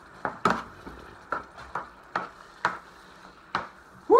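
Slotted metal spoon knocking and scraping against an electric skillet while stirring beef in a thick sauce, with short sharp knocks about twice a second.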